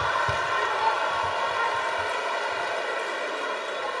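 Live theatre audience laughing and applauding, a steady wash of crowd noise.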